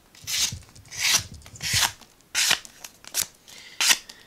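Ganzo G7392-CF folding knife blade slicing through thin cardboard in about seven quick, separate cutting strokes.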